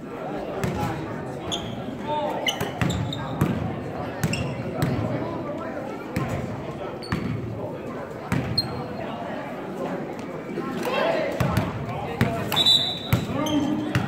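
Basketball bouncing repeatedly on a hardwood gym floor, with short high sneaker squeaks, a sharp one near the end, over indistinct chatter of players and spectators.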